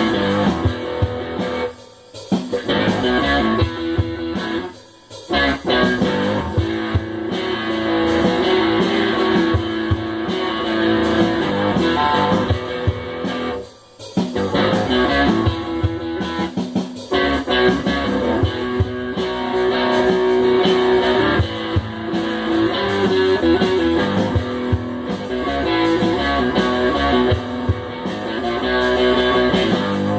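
Improvised guitar playing over a programmed drum beat from GarageBand on an iPad, with the music breaking off briefly a few times.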